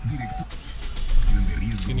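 Car radio tuned to an FM station, with voice and music coming through the dashboard speakers and a steady held tone. A low rumble about a second in comes from the camera being handled.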